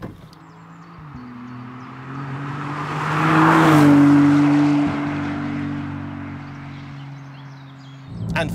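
Maserati MC20's 90-degree twin-turbo V6 driving past at a steady pace. The engine note and tyre noise build to their loudest about four seconds in, the note drops slightly as the car passes, and then it fades as the car goes away.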